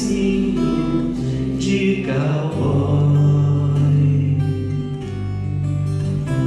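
Acoustic guitar playing the accompaniment, with a man's voice singing held notes over it.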